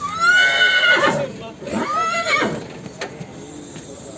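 A horse neighing: a loud, high whinny over the first second that drops in pitch at its end, then a second, shorter call that rises and falls about two seconds in.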